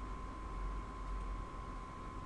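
Background noise of the recording with no speech: a steady hiss, a constant thin high whine, and an uneven low rumble.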